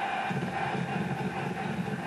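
Stadium crowd noise at the end of a televised football game, a steady wash without commentary, heard through a TV's speaker.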